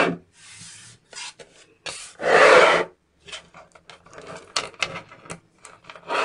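Many small neodymium magnet balls rasping and clattering against each other as tubes of them are handled and pressed together. There is a short rush of rasping near the start and a louder, longer one about two seconds in, then a scatter of small sharp clicks as balls snap into place.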